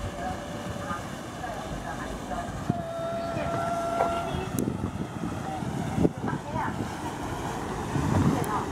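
A small passenger ferry's engine running as it passes close by, with the wash of its wake, wind on the microphone and people's voices in the background. A steady whistle-like tone sounds for about a second and a half near the middle.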